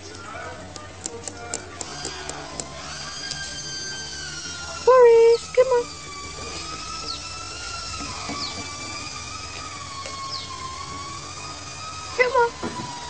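A high, slowly wavering whistle-like tone held for several seconds, preceded by a quick run of clicks, with two short loud voiced sounds about five seconds in.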